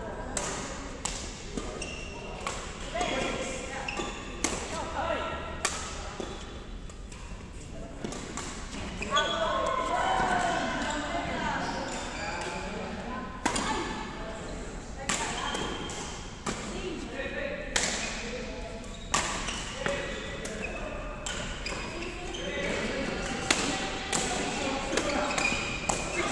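Badminton rackets striking a shuttlecock during doubles rallies: sharp cracks at irregular intervals, echoing in a sports hall, with voices of players and onlookers talking throughout.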